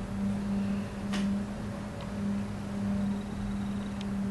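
A steady low-pitched hum, with two faint clicks about one and two seconds in.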